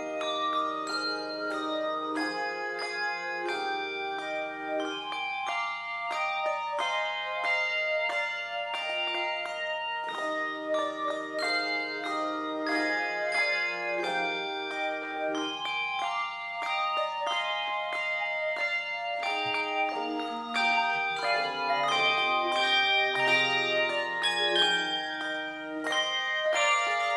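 Handbell choir playing a piece: many tuned handbells rung in quick succession, the notes overlapping and ringing on, with lower bells held under the tune.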